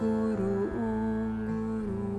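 Mantra chanting music: a woman's voice holds long, wordless sung notes with a slight waver, moving between pitches, over acoustic guitar and a plucked zither.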